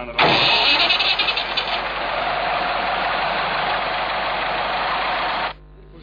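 Crankshaft-less orbital rotary internal-combustion engine being started. It catches with a rapid pulsing for the first second or so, then runs loud and steady before cutting off suddenly near the end.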